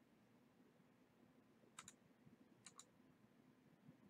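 Two computer mouse clicks, each a quick double tick of button press and release, about a second apart, over faint room tone.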